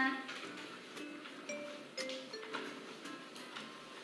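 Quiet background music of short single notes at changing pitches, with a few faint clicks from scissors cutting paper.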